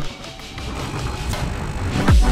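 De'Longhi Nespresso capsule espresso machine starting to brew after its button is pressed, its pump running with a steady low hum that grows louder over the two seconds, under background music.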